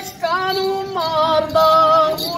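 High-pitched folk singing voice holding long, drawn-out notes, after a brief break just after the start.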